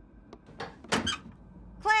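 Metal letter-slot flap in a front door pushed open: a few faint clicks, then a short squeak with a sharp click about a second in.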